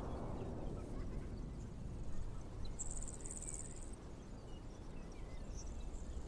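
Quiet outdoor ambience: a steady low rumble, with a short, high, pulsing insect trill about three seconds in.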